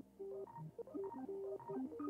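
Background music: a light electronic melody of short, clean-toned notes, several a second.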